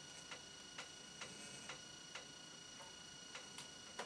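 Faint, short ticks of a marker pen tapping and stroking on a whiteboard while diagrams are drawn, about two a second at uneven spacing, over a quiet room with a faint steady high-pitched whine.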